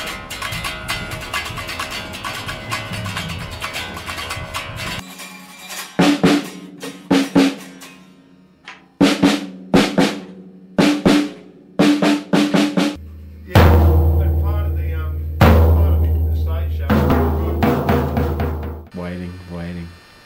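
Heavy metal band playing drums, distorted electric guitar and bass. A dense passage is followed by a run of short stop-start hits with gaps between them. About two-thirds of the way through, a heavy, low sustained riff comes in and cuts off shortly before the end.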